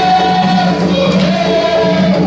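Maculelê music: voices singing a melody together over the accompaniment, with a steady low hum underneath.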